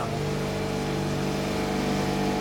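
Gelato batch freezer running with a steady mechanical hum as it churns the chocolate gelato.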